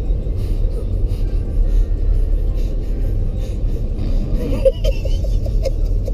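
Steady low road rumble inside a moving limousine's cabin, with faint murmuring sounds near the end.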